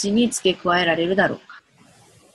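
A woman's voice speaking, stopping about a second and a half in, followed by a faint pause.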